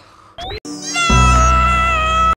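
A brief rising squeak, then a loud, high-pitched cartoon wail held for over a second over a low rumble, cut off abruptly: the clay-animated penguin Pingu crying out.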